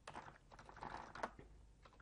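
Typing on a computer keyboard: a short run of faint key clicks as a command is entered.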